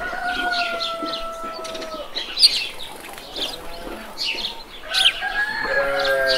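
Rooster crowing: one long held call, slightly falling in pitch, over the first two seconds, and another call beginning about five seconds in. Small birds chirp throughout, one chirp sharp and loud midway.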